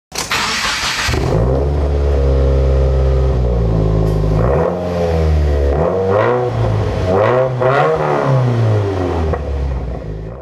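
Car engine: a short burst of noise, then a deep steady idle, then revved up and back down three or four times before fading out near the end.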